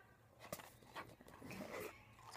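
Faint handling sounds of a cardboard gift box being opened: a few light clicks and scrapes as the lid is lifted off.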